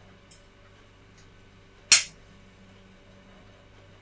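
A fork clinking against a ceramic plate: a faint tick just after the start, then one sharp clink about two seconds in.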